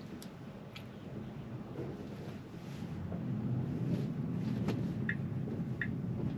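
Cabin noise of a Tesla electric car rolling slowly: a low tyre and road hum that grows louder about halfway through as the car picks up speed, with a few faint clicks and a couple of short high chirps near the end.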